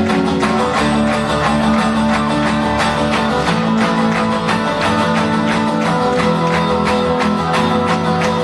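Live band playing an instrumental passage: acoustic guitars strummed in a steady rhythm over held low notes that change about halfway through.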